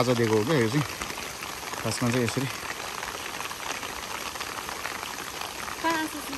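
Steady rushing water noise with brief human voices calling near the start and again about two seconds in.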